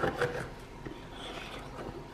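A metal spoon spreading icing over a cookie on a ceramic plate: a few light clicks near the start, then soft scraping.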